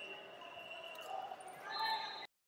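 Voices shouting in a large gym hall over a high, steady whistle-like tone, getting louder near the end as a wrestler shoots in for a takedown on the mat.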